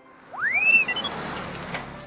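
Cartoon sparkle sound effect: a quick swooping whistle that rises and bends over, then a fast run of rising twinkly notes over a soft hiss, marking the newly fitted window glass as shiny and clean.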